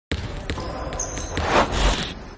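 Intro sound effect of a basketball bouncing on a gym floor over a dense din, with sharp knocks, swelling to its loudest just before the end.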